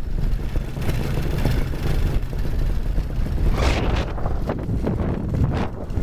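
Wind rushing over the microphone in flight, over the steady low drone of a paramotor's two-stroke engine under power, with a stronger gust about two-thirds of the way in.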